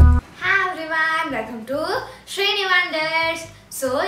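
A girl singing a few short phrases in held, wavering notes, just after a bowed-string intro tune cuts off.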